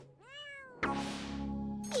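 Cartoon cat giving one meow that rises and falls in pitch, followed about a second in by a sudden noisy swish over a held musical chord.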